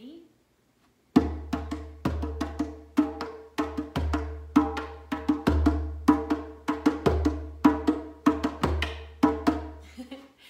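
Djembe played with bare hands in a steady, simple rhythm starting about a second in, about two to three strokes a second. Deep bass strokes are mixed with higher, ringing tone strokes.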